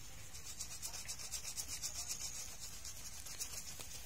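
A shaving brush and fingers rubbing lather briskly into coarse beard stubble, a scratchy bristle-on-whisker sound in quick, rhythmic strokes that thin out to a few sparser strokes after about two and a half seconds.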